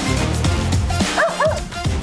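A small dog gives a few short, high yips about a second in, over background music with a steady beat.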